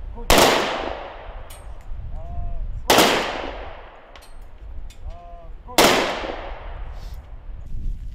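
Three-round pistol salute fired into the air by a four-man honour guard: three volleys about two and a half seconds apart, each ringing out with a trailing echo. A short shouted command comes just before each volley.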